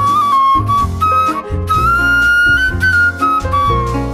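Jazz flute solo over piano, upright bass and guitar: the flute plays a flowing melody, then holds one long note that climbs slightly in pitch before moving on near the end.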